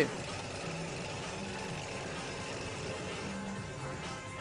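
Stage music with a deep bass line, over the steady running of a chainsaw.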